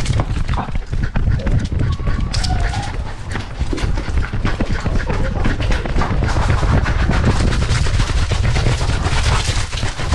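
Dense, loud rumble of rapid knocks and rubbing from a camera strapped to a moving dog's back, mixed with the dog's close panting.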